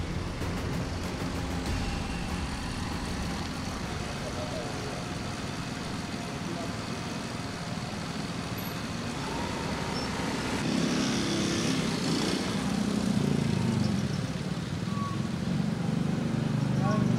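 Street ambience: steady traffic noise with people talking in the background, growing louder about two-thirds of the way through.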